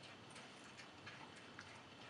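Near silence: room tone with a few faint, irregular light ticks.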